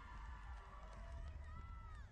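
Faint outdoor ambience with distant voices over a low steady rumble.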